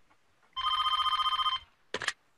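A telephone ringing once: a fast-trilling electronic ring about a second long. A short click follows near the end, just before the call is answered.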